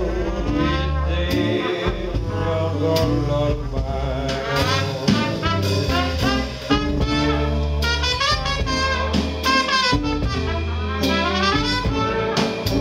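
A live hot-jazz and blues band plays an instrumental passage. Trumpet and trombone carry the lead over upright bass, bass drum and guitar, with a steady beat of drum hits.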